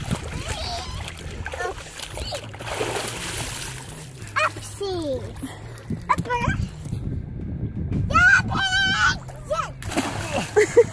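Lake water splashing with a child's voice over it, and a long, wavering high-pitched yell near the end as a girl jumps into the water.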